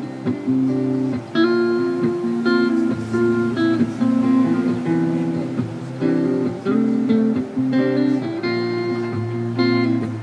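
Solo hollow-body archtop electric guitar played through a small amplifier: chords and single notes over a moving bass line.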